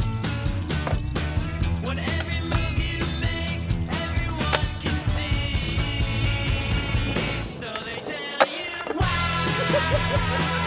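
Skateboard wheels rolling on concrete under a loud rock music soundtrack, with one sharp crack about eight seconds in while the music's bass briefly drops out.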